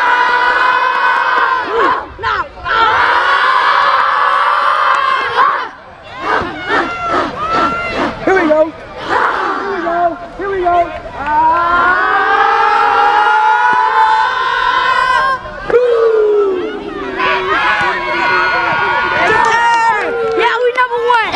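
A group of young football players chanting and yelling together in long held shouts, with a run of rhythmic hand claps around the middle.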